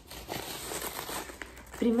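Crepe wrapping paper and a cotton tote bag rustling and crinkling as a wrapped gift is pulled out and handled, a dense run of small crackles.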